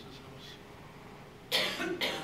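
A person coughing twice in quick succession, starting about one and a half seconds in, over quiet room tone.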